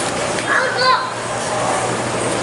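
Background chatter of people, with a child's high voice calling out briefly about half a second in.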